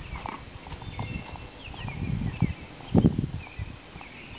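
Footsteps in sneakers on a hard tennis court, uneven low thuds that get louder and peak about three seconds in. Birds chirp faintly in the background.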